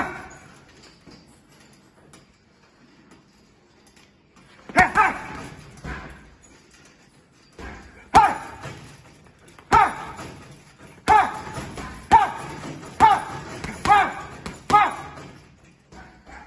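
Boxing gloves punching a heavy punch bag: one thud about five seconds in, then a run of about seven punches roughly a second apart in the second half. Each punch comes with a sharp shouted 'ha!' exhale.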